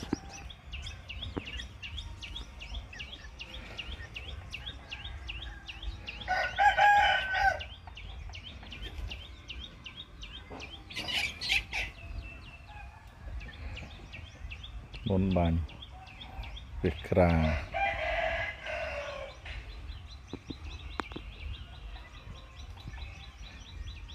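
A rooster crows once, about six seconds in, and is the loudest sound. A short high bird call follows a few seconds later.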